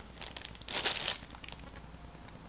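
Toy packaging crinkling as it is handled, in a few short, faint rustles.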